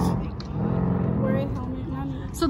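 A motor vehicle's engine hum fading away about a quarter of a second in, leaving a fainter steady hum under indistinct voices.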